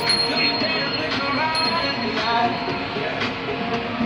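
John Deere 6250R tractor's six-cylinder diesel engine and drivetrain running steadily under field work, heard from inside the cab, with several whining tones that shift in pitch over the drone.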